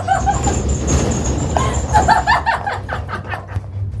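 A dog whining in short, high-pitched whimpers near the start and again around two seconds in, over the steady low rumble of a moving gondola cabin; the dog is uneasy at the gondola's shaking.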